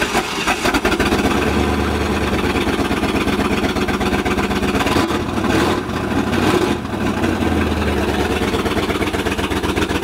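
Ford 390 big-block V8 just fired up and idling loudly, its note swelling briefly about a second and a half in and again near eight seconds.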